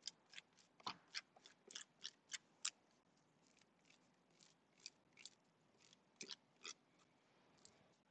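Faint, quick taps of a stencil brush dabbing paint through a stencil, about three a second for the first few seconds, then a pause and a few scattered taps.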